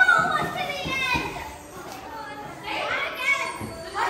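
Young children's high-pitched voices calling out, once at the start and again around three seconds in.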